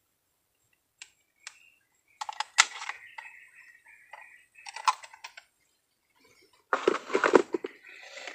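Metal fish lip grip and hand-held digital scale being handled: scattered sharp clicks and short clattering runs, with silent gaps between.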